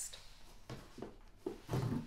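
Soft handling noises as a paperback book is taken out of a box: a click at the start, a few light rustles and knocks, and a duller thump near the end.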